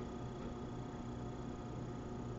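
Faint, steady room tone: a low hum with a light hiss underneath.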